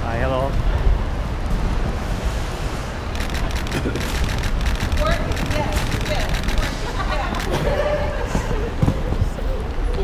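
Busy airport entrance ambience on a handheld microphone: a steady low rumble under scattered voices of passers-by, with a quick run of clicks about three to four seconds in.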